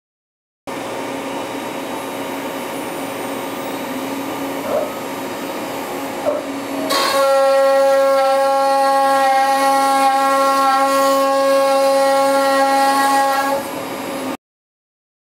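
Carbide 3D 2.2 kW spindle spinning a 1/2-inch two-flute upcut endmill at about 18,000 RPM with a steady whine; about halfway through the bit enters the wood and a louder, pitched cutting howl with many overtones takes over, a quarter-inch-deep pass at 200 inches per minute.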